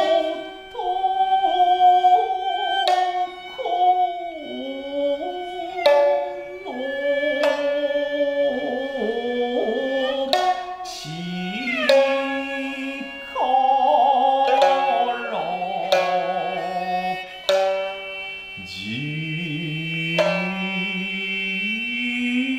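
Traditional Japanese dance music: sharp plucked shamisen notes, struck every second or two and ringing out, under a sustained melody line that slides between pitches.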